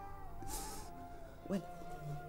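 Soft background music holding a long note while a weeping man makes a breathy sniff about half a second in. Near the end comes a short, rising, whimpering sob, the loudest sound.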